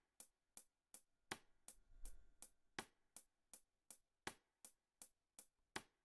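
Soloed programmed reggae drum track played back very quietly: a hi-hat ticking evenly on every eighth note, a little under three ticks a second, with a slightly stronger rim tap stroke about every second and a half.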